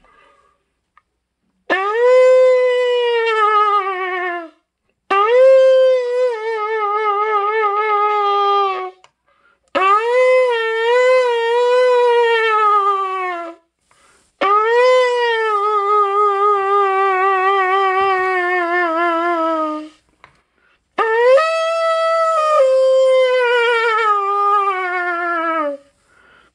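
A shofar blown in five long blasts, each several seconds long with a short break between them. Each blast starts strong and sags slowly in pitch; the middle ones waver. The last starts higher and steps down partway through.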